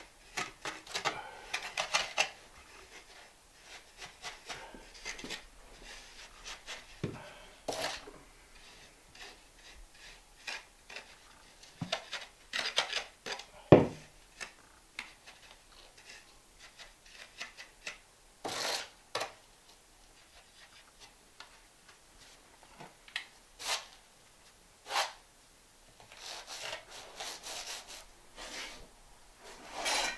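Deck mud (sand-and-cement dry pack) being scooped and packed by hand under a linear shower drain to level it: irregular gritty scraping and rubbing, with a sharp knock about halfway through.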